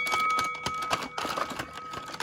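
Irregular clicks and clacks of a plastic Rock 'Em Sock 'Em Robots toy as its punch controls are worked and the red and blue robots trade blows.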